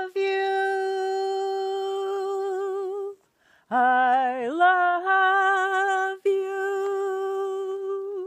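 A woman singing long held notes with a slight vibrato. She breaks for a breath about three seconds in, slides up into the same note again, and breaks briefly once more a little past halfway.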